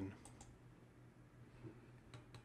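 Computer mouse button clicked, two faint clicks close together about a quarter-second in, over near silence with a low steady hum.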